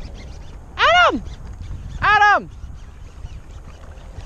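A man shouting twice across the shore, two long calls that each rise and then fall in pitch, trying to reach a companion who is out of earshot. A low rumble of wind on the microphone runs underneath.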